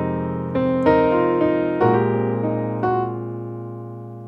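Piano playing slow cocktail-jazz chords, several struck in the first three seconds, the last left to ring and slowly fade.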